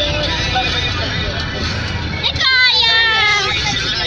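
Steady low rumble of a car's cabin on the move. About two and a half seconds in, a loud voice comes in with long, sliding notes.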